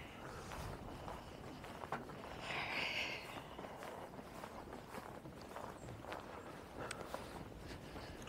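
Faint, irregular footsteps of people walking on a boardwalk, with a short higher-pitched rustle about two and a half seconds in.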